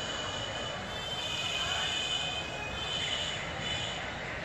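A steady shrill high-pitched tone, several pitches sounding together, over the noise of a crowd. It sets in at the start and thins out near the end.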